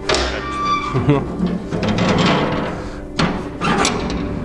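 Rusty iron well lid being lowered shut: metal scraping and squealing on its hinges, then two sharp clanks a little after three seconds in as it comes down.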